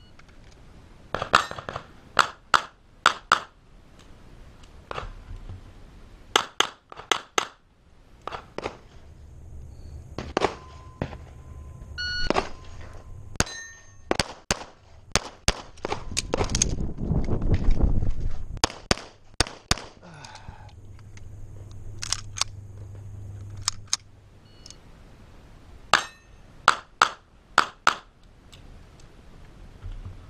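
Handgun shots fired in quick strings of two to six, string after string. A louder low rumble comes about halfway through.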